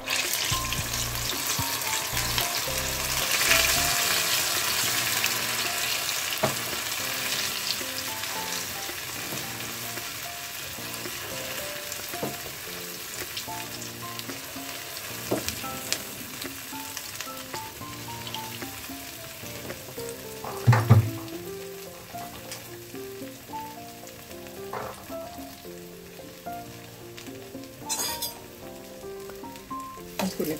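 Urad dal vadas (bhalle) frying in hot oil in a small frying pan: a loud sizzle that swells a few seconds in as fresh batter is dropped in, then slowly settles to a steadier fizz. Soft background music runs underneath, and a single sharp knock about two-thirds through is the loudest sound.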